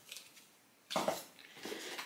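Handling of boxed glass shakers and packaging: a sudden knock about a second in, followed by faint rustling as the items are set down and picked up.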